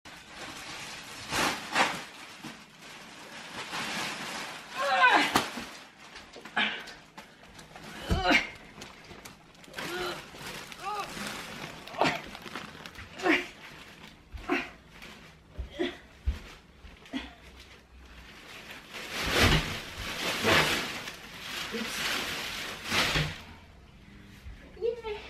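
Large plastic bags rustling and crinkling as they are carried, pushed into place and set down, with knocks among the crackling. A woman's short vocal sounds come through between them, and a "yeah" near the end.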